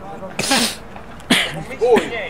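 Two short, hissing bursts of breath close to the microphone, about half a second and a second and a third in, followed by a man's shout of "Oh" near the end.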